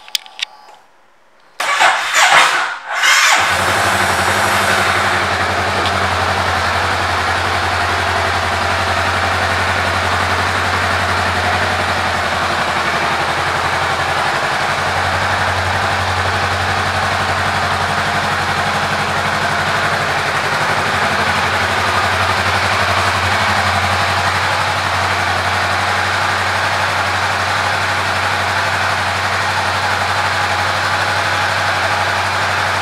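2018 Honda Rebel 500's 471 cc parallel-twin engine started on the electric starter, catching about two seconds in, then idling steadily.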